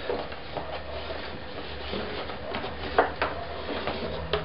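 A few light clicks and taps as small piezo pickups are handled on an acoustic guitar's wooden top, with one sharper click about three seconds in, over a steady low hum.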